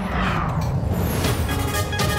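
Broadcast logo-transition sound effect: a sudden whoosh that sweeps down in pitch over a low rumble, with musical tones coming in about halfway through.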